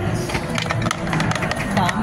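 Dice rattling inside a bubble craps machine's clear plastic dome as they are tossed for the roll, a quick run of sharp clicks, over casino background chatter.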